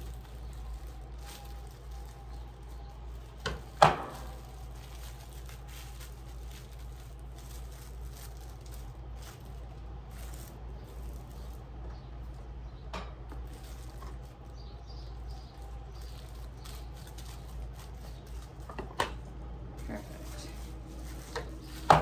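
Shrink-wrap film and a bar sealer being handled: faint plastic crinkling and a few sharp clacks, the loudest about four seconds in, over a steady low hum.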